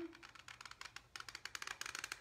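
Mini hot glue gun's trigger being squeezed as it feeds glue onto a cardboard tube, giving a faint, rapid run of small clicks.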